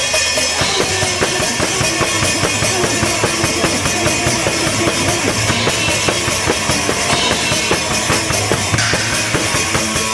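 A punk band playing live and loud, with fast, steady drumming on a drum kit under electric guitars.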